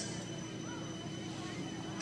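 Pause in a speech: steady background noise of an open-air venue with a faint, constant hum.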